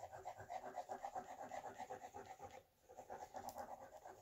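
Tip of a Fabri-Tac glue squeeze bottle dabbed and dragged across paper as glue is dotted on: a faint, quick, even run of soft ticks and scratches that pauses briefly a little past halfway.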